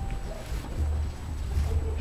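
Low rumble of wind buffeting an outdoor microphone, with only faint traces of other sound above it.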